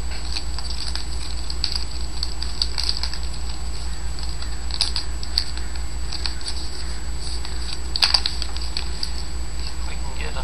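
Trading cards handled and flipped through by hand: a run of soft flicks and rustles of card stock sliding against each other, with one sharper click about eight seconds in, over a steady low electrical hum.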